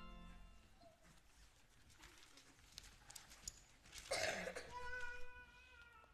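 The last sung note of a hymn dies away into quiet room tone. About four seconds in comes a brief high-pitched call, held steady for about a second.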